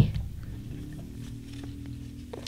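A handmade junk journal being handled: a knock as it is set down or opened, then a few light clicks and rustles of its paper pages being turned.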